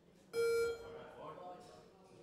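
A short, loud electronic buzzer tone about a third of a second in, lasting under half a second, as the attempt clock runs down to about 30 seconds left; faint voices follow.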